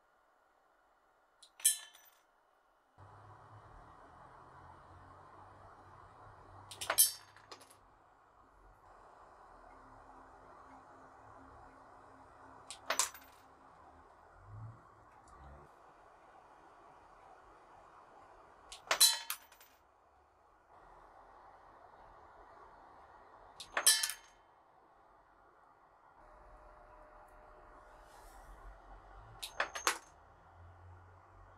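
Wrist-mounted single-stage coil gun firing six times, each shot a sharp metallic clack, spaced about five or six seconds apart. A faint steady hiss fills the gaps from about three seconds in.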